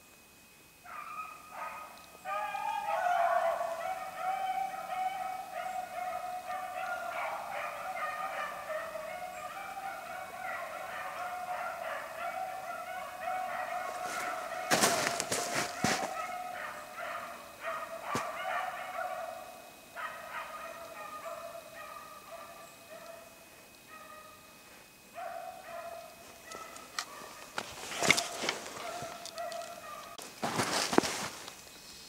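A pack of rabbit hounds baying on a running rabbit, a chorus of overlapping calls that starts about a second in and keeps going with short lulls. A brief rustling noise comes about halfway through, and a sharp crack comes near the end.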